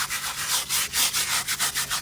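A stiff-bristled hand brush scrubbing mold off a granite stone slab in quick back-and-forth strokes, about six a second.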